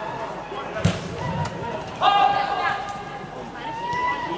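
A football kicked on an indoor artificial-turf pitch: one sharp thump about a second in. About two seconds in, a player gives a loud, high-pitched shout lasting about a second, over the chatter and calls of the hall.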